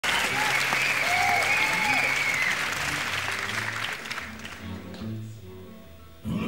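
Concert audience applauding and cheering, with a long pitched whistle or shout over the clapping, dying away after about four seconds while the band plays low, quiet notes underneath.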